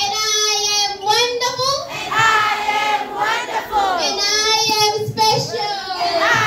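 Children singing a song together with a woman leading on a microphone, with two long held notes, one from the start and another about four seconds in.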